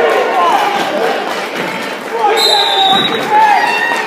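Voices of coaches and spectators calling out in a reverberant school gym during a wrestling bout, with a thump about three seconds in.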